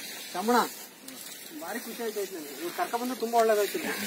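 Speech: voices talking at a moderate level over a steady background hiss.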